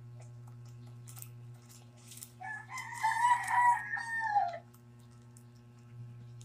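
A rooster crowing once, a single call of about two seconds in the middle that rises, holds and drops away at the end. Underneath are a steady low hum and faint crinkles from a plastic-wrapped squishy toy being squeezed.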